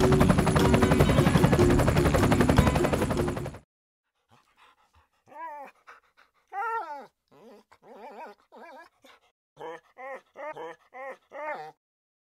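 Music that cuts off suddenly about three and a half seconds in. After a short silence, a dog gives about a dozen short high calls, each rising and falling in pitch, coming quicker toward the end.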